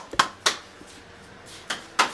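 Hands patting a ball of wet tortilla dough: three quick slaps in the first half second, then quiet room sound with one faint tap near the end.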